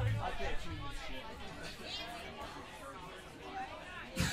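Indistinct chatter of several voices in a small club between songs, with no music playing; a brief low thud comes right at the start.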